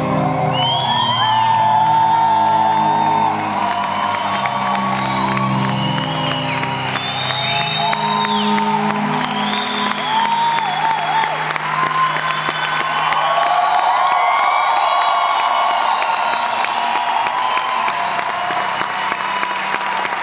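Live concert crowd cheering and whooping over the band's sustained closing chords. The music fades out about two-thirds of the way through, and the cheering carries on alone.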